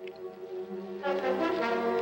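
Dramatic orchestral film score led by brass, holding a chord and then swelling louder about a second in.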